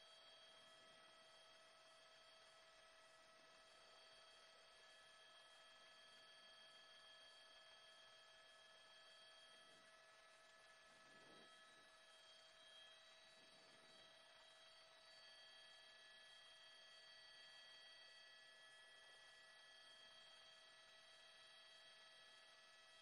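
Near silence: only a faint, steady electronic hum of several fixed tones over low hiss.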